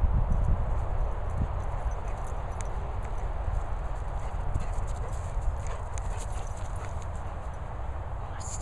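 Dogs' footfalls on turf as a Labrador and an English Setter run and play, with a steady low rumble and many faint short ticks.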